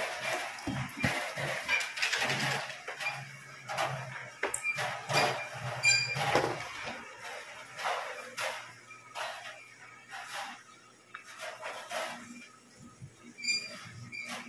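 Background music mixed with irregular knocks and clatter over a low steady hum, the knocks thinning out and growing quieter in the second half.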